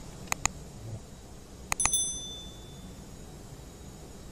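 Two light clicks, then a quick cluster of clicks followed by a single high, bell-like ding that rings out and fades over about a second.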